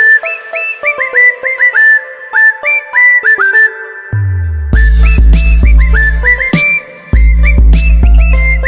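Background music: a whistled melody of short notes that slide up into pitch over light ticking percussion. About four seconds in, a falling sweep leads into a heavy bass line, which drops out briefly near seven seconds.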